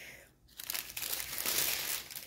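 Small plastic bags of diamond painting drills crinkling as they are handled, starting about half a second in and running on as a dense, crackly rustle.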